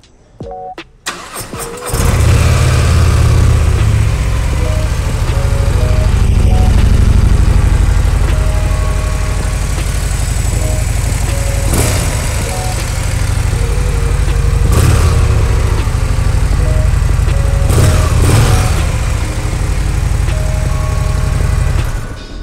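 Harley-Davidson Breakout 117's Milwaukee-Eight 117 V-twin starting on the electric starter about a second in, then running loud and steady at idle. A few short throttle blips come in the second half.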